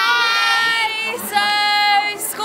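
Teenage girls singing two long, high held notes, with a short break about a second in.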